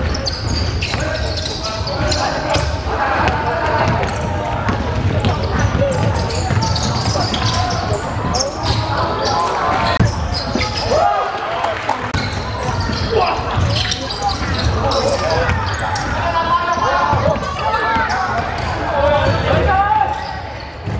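Live basketball game in a large sports hall: a basketball bouncing on the court among players' and onlookers' voices, which carry on without a break.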